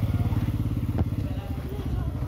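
A motorcycle engine running with a low, pulsing note that fades over the two seconds, with a single sharp click about a second in.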